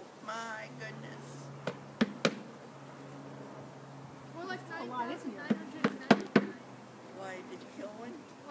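Wooden bee package being knocked to shake the last bees into the hive: a few sharp knocks about two seconds in and a quicker cluster of knocks around six seconds, over a steady low hum.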